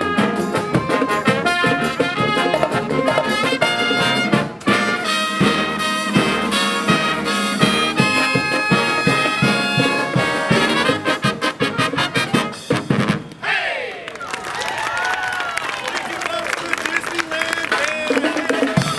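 Marching brass band with sousaphones, trombones, trumpets and saxophones playing a lively tune. The tune breaks off about thirteen seconds in and a quieter stretch with sliding notes follows.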